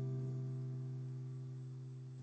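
The last chord of an acoustic guitar ringing out after the song, several steady notes slowly dying away.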